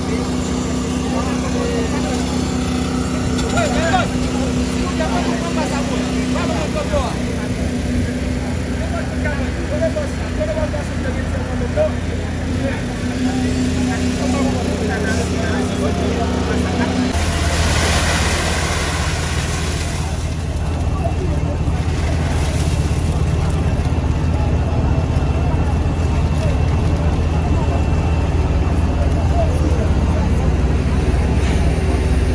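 Construction machinery engines running steadily under workers' voices. About 17 seconds in, a humming tone stops and a few seconds of rushing noise follow, while a low engine hum carries on.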